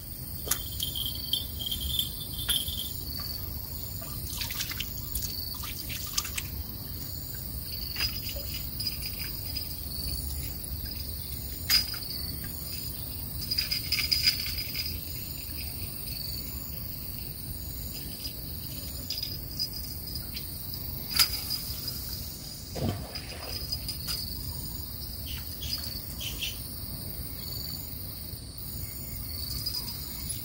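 A steady insect chorus of evenly repeated high chirps, with a few sharp clicks and rustles scattered through it, the sharpest about two-thirds of the way in.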